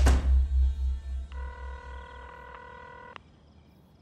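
A deep, pulsing music bed fading away, with a brief rushing sound at the start. About a second in comes a single steady phone ringing tone, the ringback of an outgoing call, which lasts about two seconds and cuts off sharply.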